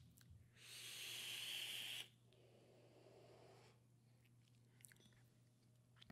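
A vaper drawing on a dripping atomizer (RDA) built with fused Clapton coils: a hissing inhale through the device lasting about a second and a half, followed by a softer, lower breath as the vapor is exhaled.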